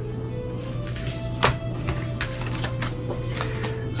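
Soft background music with sustained tones, with a few light taps and slides of tarot cards being gathered up from a tabletop; the clearest tap comes about one and a half seconds in.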